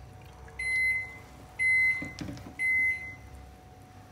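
An electronic appliance beeper sounding three times, about a second apart, each beep a steady high tone lasting about half a second.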